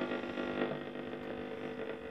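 Schaub-Lorenz Touring 30 transistor radio tuned between stations, giving a faint hiss and hum while the tuning knob is turned.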